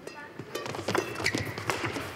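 Badminton doubles rally: a rapid series of sharp racket strikes on the shuttlecock and footfalls, with short squeaks of court shoes on the floor, starting about half a second in.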